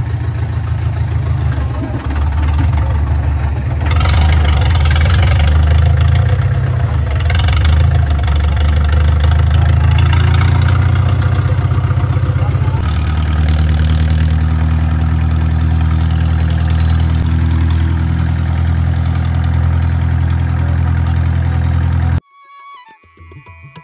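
Tractor's diesel engine running loud and steady as it drives along, heard close up from the driver's seat; about 13 seconds in its note shifts to a different steady pitch.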